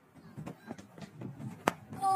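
A cricket bat strikes the ball once: a single sharp crack about a second and a half in, over faint background noise.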